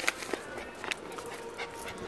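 Boston terrier panting, with a few light clicks.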